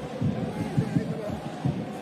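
Football stadium ambience: crowd sound with a dense run of irregular low thumps.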